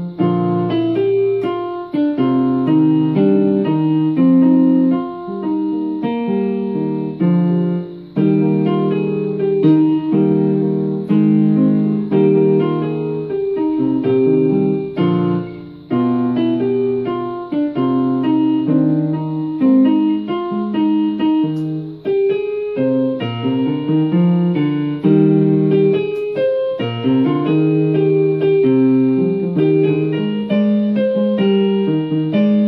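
Portable electronic keyboard played in a piano voice: a melody over low chords and bass notes, with a couple of brief breaks in the playing.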